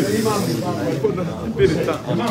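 Several people talking at once in a room: overlapping, indistinct voices, with a brief hiss near the start.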